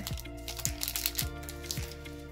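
Background music with held notes and a steady beat of about two thumps a second, with faint crinkling of a foil booster-pack wrapper as the cards are pulled out.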